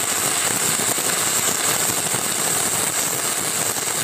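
Stick-welding arc burning a 6010 rod: a steady, dense crackle with a high hiss running through it.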